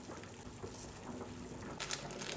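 A pot of black bean soup simmering faintly on the stove; near the end a crisp hiss starts as a stream of dry granules is poured into the pot.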